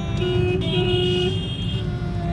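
Low, steady rumble of a car driving, heard from inside the cabin. Through the middle of it a vehicle horn sounds for about a second and a half as a held, pitched tone.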